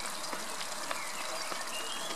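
Water from a small waterfall splashing and trickling steadily over rocks, with a few faint clicks.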